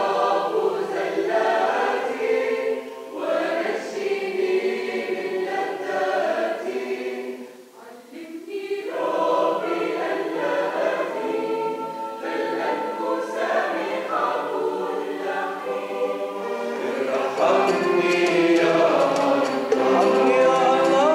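Mixed choir of men and women singing a hymn in harmony, with a brief break between phrases about eight seconds in and growing louder near the end.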